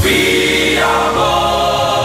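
Orchestral pop music with a choir. It comes in on a sudden loud hit, then holds sustained choral chords over the orchestra.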